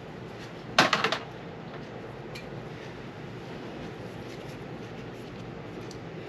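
Metal shotgun bolt parts handled together, giving a quick run of sharp clicks about a second in and a few faint ticks after, over a steady low hiss.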